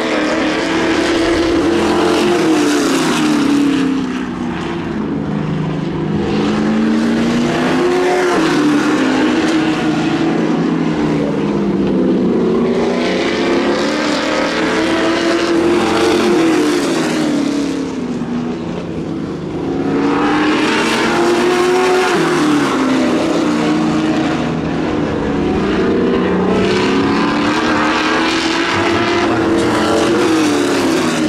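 Sportsman-class stock car engines racing on an oval, revving up and easing off lap after lap, the pitch climbing and falling over and over. Loud throughout, with two brief dips as the cars get farther away.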